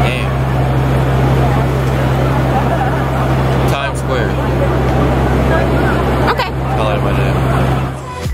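Busy city street ambience: a steady low hum with a crowd talking indistinctly, and two brief clicks, one about halfway and one near the end.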